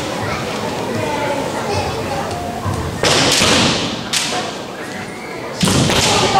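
Kendo bout in a wooden-floored gym: a loud burst of kiai shouting and impact noise about halfway through, then a heavy stamping thud of a fencer's foot on the wooden floor together with another shout near the end.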